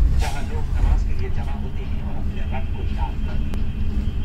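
Steady low rumble of a train carriage rolling slowly through a station, with people's voices heard indistinctly over it.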